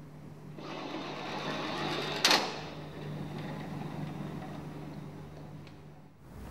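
A small lab trolley rolling down a track with a rattle that grows louder, then striking a force-sensor barrier with one sharp bang about two seconds in. A fainter rolling rattle follows and dies away, over a steady low hum.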